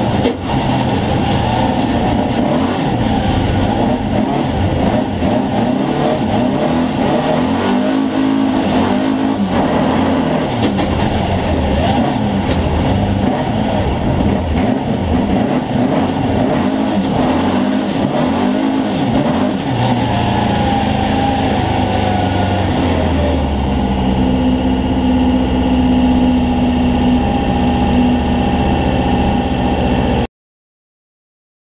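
Sprint rally car's engine heard from the car, revving up and down hard while driving on snow. About twenty seconds in it settles into a steadier, even note as the car slows.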